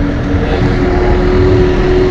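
Loud steady rumbling noise with a hiss over it, and a faint steady hum that shifts a little higher about half a second in.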